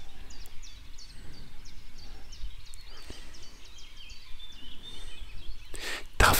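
Outdoor background with a low steady rumble and a bird chirping repeatedly in short, high notes.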